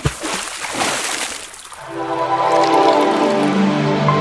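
A water-splash sound effect, a broad rush that fades over about two seconds, followed by music with sustained held notes starting about two seconds in.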